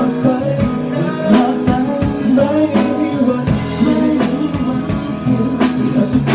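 Live band music with a steady drum-kit beat and guitar, and a man singing into a microphone.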